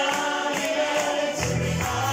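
Two men singing live into microphones over pop backing music. A bass line comes in about one and a half seconds in.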